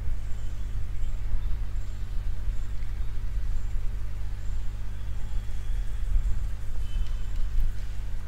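Steady low electrical hum with a row of evenly spaced overtones, holding level throughout.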